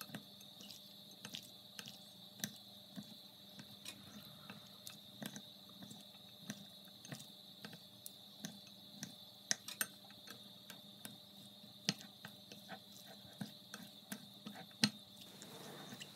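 Chopsticks stirring chopped shrimp, squid and vegetables in a bowl, giving faint, irregular light clicks and taps several times a second as they knock against the bowl.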